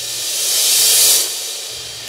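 Segment-transition sound effect: a hissing, cymbal-like swell that rises to a peak about a second in, then fades away.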